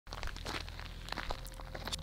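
Faint footsteps on dry, gravelly dirt, a series of soft irregular scuffs.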